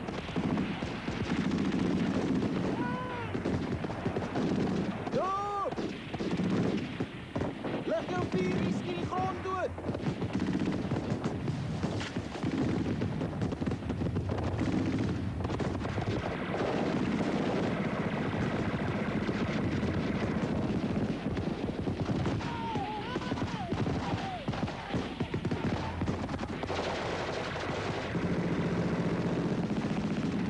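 Continuous rapid rifle and machine-gun fire of a firefight, with men shouting now and then over it.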